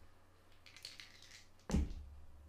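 Desk handling noise: a few light clicks and scratches, then one sudden loud thump near the end, as something is knocked or set down against the desk or microphone.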